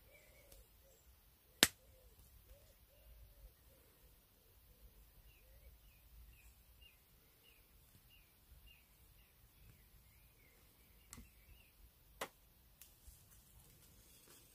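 Steel round nose pliers clicking against copper wire as it is curled around a pencil: a single sharp click about a second and a half in, then two fainter ones near the end, with quiet handling in between.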